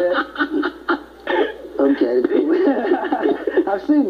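Two men laughing together: a quick run of short chuckles, a brief lull about a second in, then more laughter.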